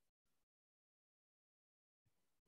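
Near silence: the audio is all but dead silent, with only a barely audible blip just after the start.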